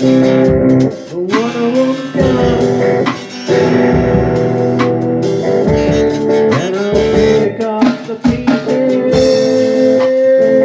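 A rock band playing an instrumental passage: electric guitars over a drum kit, with the lead guitar bending notes upward several times.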